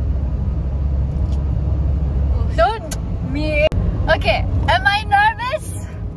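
Steady low rumble of a car heard from inside the cabin. From about two and a half seconds in, a woman's voice comes and goes over it, without clear words.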